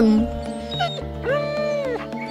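Gentle background music, with a single short whimper from the sad cartoon dog about a second and a half in.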